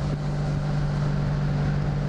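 1983 Honda V65 Magna's V4 engine running at a steady cruising speed, an even low hum, with wind rushing over the microphone.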